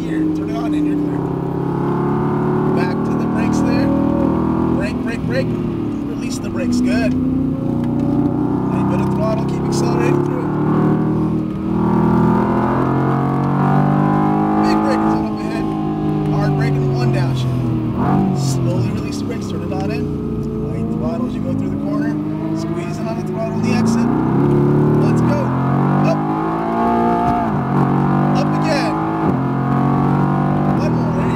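Mercedes-AMG GT R's twin-turbo V8 heard from inside the cabin at track speed. Its pitch climbs under hard acceleration, drops at gear changes or when the throttle is lifted, then climbs again, several times over.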